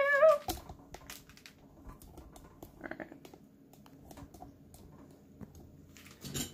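A sung "doo" ends about half a second in. Then come faint, scattered clicks and knocks of a webcam being handled and repositioned.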